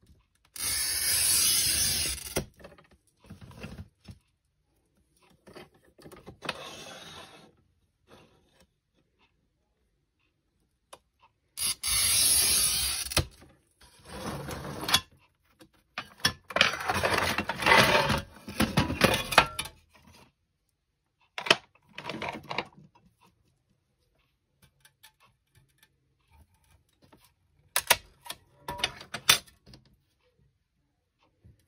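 Glass cutter scoring clear sheet glass along a strip-cutting guide: two long, hissy scratches about ten seconds apart. Between and after them come shorter scrapes and clicks as the glass is handled.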